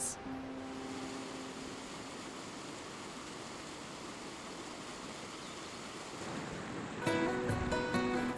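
Steady rush of a mountain creek flowing over rocks. Near the end, strummed acoustic guitar music comes in.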